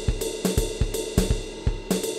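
Programmed drum-kit loop from the Groove Pizza web sequencer: a swung jazz pattern of kick drum, snare and cymbal/hi-hat at a slow 82 beats per minute, with some of the preset's hits taken out.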